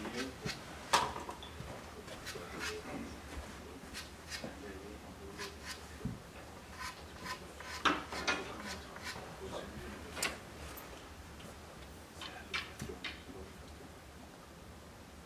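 Scattered small clicks and scrapes, the sharpest about a second in and again just before eight seconds, over faint murmured voices.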